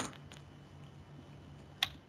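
A single short, sharp click near the end, over faint steady room hum: a computer click advancing the presentation slide.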